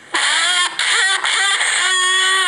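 A high-pitched voice making several short vocal sounds in a row, its pitch sliding up and down within each.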